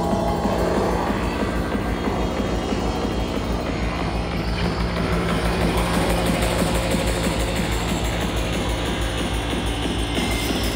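Psytrance played loud from DJ decks over a club sound system, with a fast, steady pulsing bass beat.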